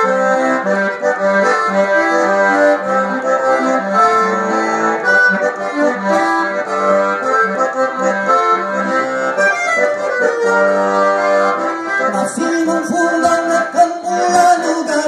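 Diatonic button accordion (gaita ponto) playing a solo instrumental passage of a gaúcho song: a running melody over steady, repeated bass notes, with no singing.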